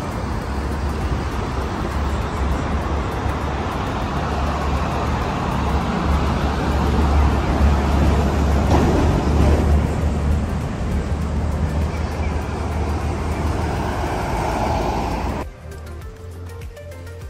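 Road traffic on a busy multi-lane road: cars and trucks passing as a steady, loud noise with a heavy low rumble, swelling as vehicles go by about halfway through. It cuts off sharply just before the end.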